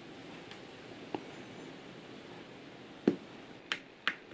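Quiet room with a few short plastic clicks: a small one about a second in and two near the end, the louder just after three seconds, as a finger works the power button on a Hubsan Zino Mini Pro drone.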